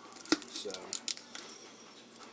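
Scissors snipping through a turkey's plastic wrapping, with the plastic crinkling as it is handled; one sharp snip about a third of a second in and a few lighter clicks around a second in.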